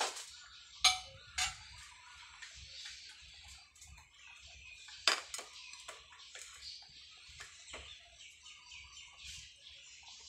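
Kitchen clatter of crockery and utensils: a few sharp clinks, the loudest about a second in and about five seconds in, as a bowl is set down. Faint chirping runs underneath.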